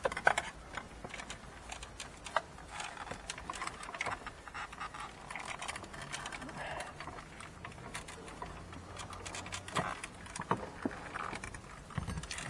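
Scattered small clicks, knocks and rattles of hard plastic trim and metal as the radio unit and its fascia are handled and worked loose from the dashboard.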